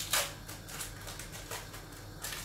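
Plastic cheese-slice wrapping rustling and crinkling as slices are handled, with one short burst of crinkle just after the start and fainter rustles after it.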